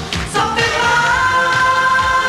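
Pop song performed by a female singer with backing music, a long note held steady from about half a second in.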